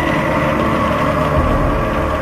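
Dark, ominous background score: a low rumbling drone under several sustained high tones.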